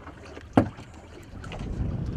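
Sounds on a small fishing boat at sea: a single sharp knock about half a second in, then a low rumble of wind and water that grows louder in the second half.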